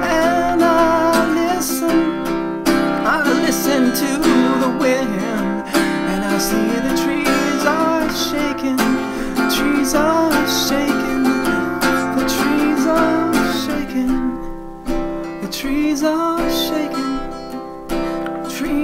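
Acoustic folk song with strummed acoustic guitar; the music thins out about fourteen seconds in as the lowest notes drop away.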